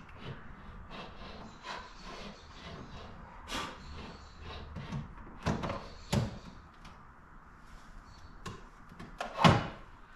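Scattered knocks and clunks as a JuiceBox 40 EV charger is handled and locked onto its wall-mounting bracket, with a few sharp hits a few seconds in and the loudest clunk near the end.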